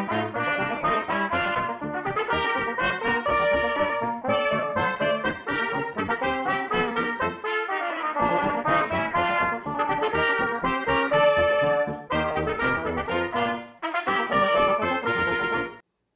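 Multitracked trumpet ensemble: several trumpet parts played together in harmony by one player, a tune in short phrases with brief breaks between them. The music stops shortly before the end.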